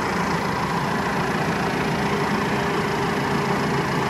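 Deutz-Fahr 6135C tractor's four-cylinder diesel engine idling steadily.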